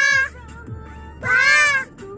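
A young child singing two long, high-pitched held notes at full voice, one at the very start and one from about a second and a quarter in.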